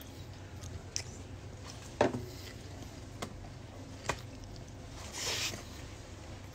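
A person eating close to the microphone: quiet chewing with a few sharp mouth clicks about a second apart, and a short breathy rush near the end.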